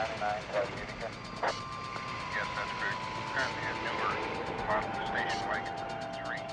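A car driving off, with indistinct voices over it and a single held tone that enters about a second and a half in and slowly sinks in pitch.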